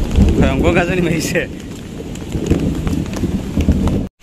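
Steady rain with a heavy low rumble. A person's voice sounds briefly about half a second in.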